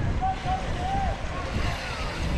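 Wind rumbling unevenly on the microphone as mountain bikes roll past on a dirt trail, with distant voices shouting.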